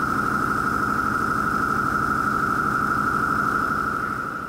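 Synthesized intro sound effect: one steady high tone held over a low rumbling drone, fading in and easing out near the end.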